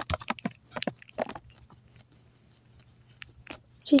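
Small plastic lubricant bottle being handled and its cap opened: a quick run of small clicks and taps in the first second or so, then two single clicks near the end.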